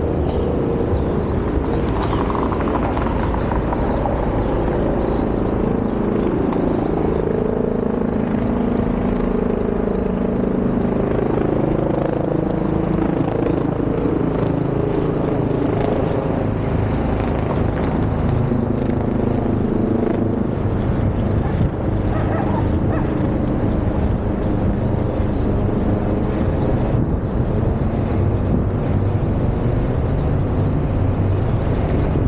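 City street traffic: a steady rumble of vehicles idling and passing at an intersection.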